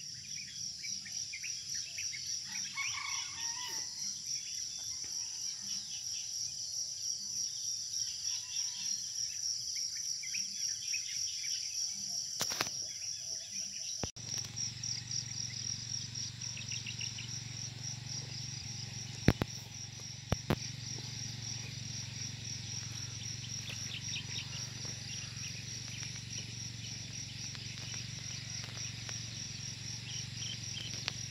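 A continuous high-pitched chorus of insects such as crickets, with scattered bird chirps. About halfway a low steady hum joins it, and a few sharp knocks stand out as the loudest sounds.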